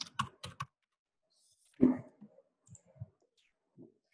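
Typing on a computer keyboard: a quick run of keystrokes in the first second, then a few scattered ones later.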